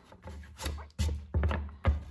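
A few light knocks and rubs as hands handle a piece of leather and shavings on a wooden workbench, over a low steady hum.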